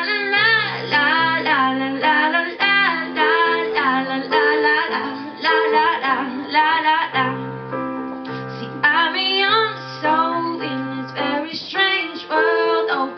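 A woman singing a melody into a microphone, with wavering held notes, over keyboard accompaniment of sustained piano-like chords.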